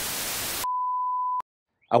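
A TV-static sound effect: a burst of even hiss, then a steady high beep lasting under a second that cuts off with a click.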